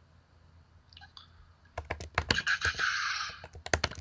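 Computer keyboard typing: a quick, irregular run of key clicks starting about halfway in, with a brief hiss among them.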